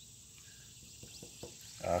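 Quiet outdoor background with a faint steady chirring of insects such as crickets. A man's short 'uh' comes in at the very end.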